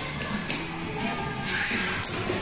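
Background music, with loose plastic toy pieces clattering and rattling as a hand rummages through a tub of them. The clatter comes in a few short bursts and thickens near the end.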